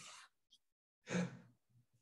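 A man sighing close to a phone microphone: a short breath at the start, then a louder, breathy sigh with a low voiced tone about a second in.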